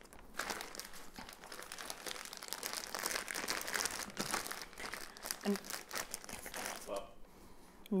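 A gallon-size Ziploc plastic bag crinkling as it is handled and opened out by hand, a rapid run of small crackles that stops about a second before the end.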